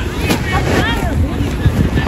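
Wind and handling noise rumbling on a phone microphone held against clothing, with voices calling out in the first second.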